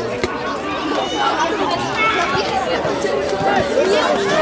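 Several footballers' voices shouting and calling to each other on the pitch during play, overlapping.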